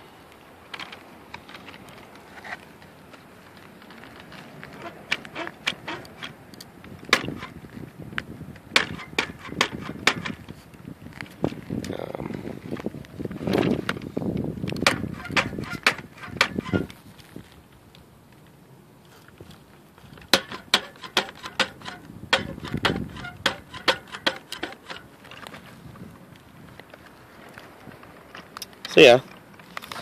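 Irregular plastic clicks, taps and rattles from a Maisto Tech Baja Beast toy-grade RC buggy being handled and turned over in the hands.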